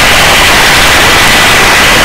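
Steady, loud hiss-like noise of a helicopter hovering during a litter hoist, with a faint steady high tone running through it.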